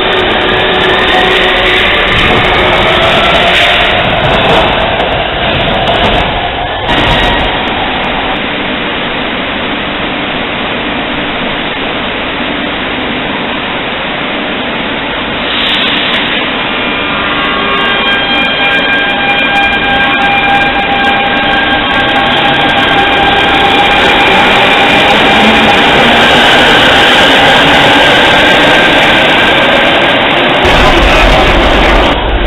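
Barcelona metro electric trains in an underground station. At first the traction motors whine rising in pitch as a train gathers speed past the platform. A short hiss comes near the middle, then a steady electric whine in several pitches, with the rumble of a train getting louder toward the end.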